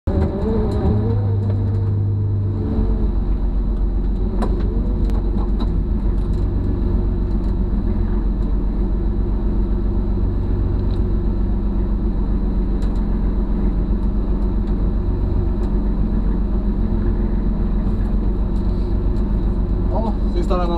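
Rally-prepared BMW E36 325's straight-six engine idling steadily while the car is stationary, heard from inside the stripped cabin; its note shifts slightly about three seconds in.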